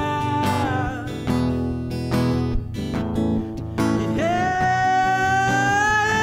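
A man's voice holding a long, high sung note over a strummed Washburn acoustic guitar. The note ends about a second in, and the guitar strums on alone for about three seconds. A new held note starts about four seconds in and slides slowly upward.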